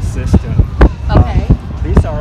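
A man talking, over a low rumble of wind on the microphone, with a few sharp thumps; the strongest comes a little before the middle and another near the end.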